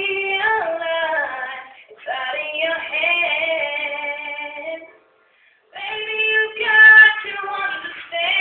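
Girls' voices singing long held notes that slide between pitches, over a soft acoustic guitar accompaniment; the sound drops out completely for about half a second a little past the middle.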